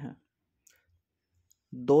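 A man's voice speaking Hindi, cut off just after the start and resuming near the end. In between is a pause of near silence holding two faint clicks a little under a second apart.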